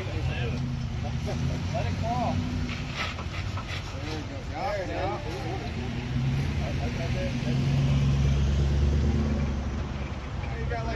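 A Toyota Tacoma pickup's engine pulling under light throttle as the truck crawls its front wheel up a steel flex ramp. Its low rumble swells louder about six seconds in and eases off near the end.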